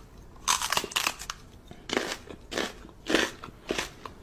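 A large dog mouthing and nibbling at a man's ear: a run of wet, crunching chewing noises, roughly two a second.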